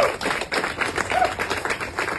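Small crowd clapping: many separate, irregular hand claps.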